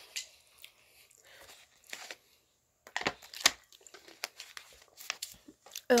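A person with a candy in the mouth: scattered short crunching and rustling noises, the loudest about three seconds in.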